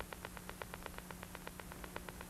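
Background noise of an old film soundtrack: hiss with a fast, even ticking of about a dozen clicks a second and a low steady hum.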